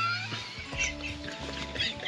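A person farting: a short, squeaky, trumpet-like tone that bends in pitch and dies away just after the start. Soft background music with held notes follows.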